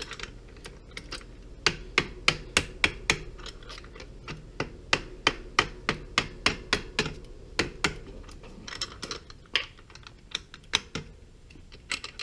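Bicycle crank-arm puller being worked with a wrench as it draws the crank arm off the spindle: runs of sharp, light clicks and taps, about three a second, with short pauses between the runs.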